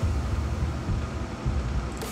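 Steady low rumble with a faint hiss of background noise, with no distinct strokes or clicks standing out.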